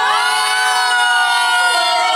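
Two or more people's voices holding a long, drawn-out "whoa" in amazement, the pitch gliding up at the start and then held.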